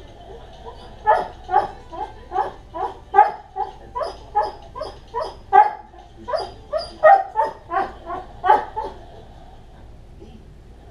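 A dog barking in a fast series of about twenty short, sharp barks, two to three a second, starting about a second in and stopping shortly before the end: frustrated barking at a retrieve exercise.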